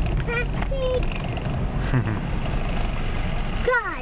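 Steady low rumble of a car driving, heard from inside the cabin. Brief voice sounds come near the start, and a falling vocal sound comes near the end.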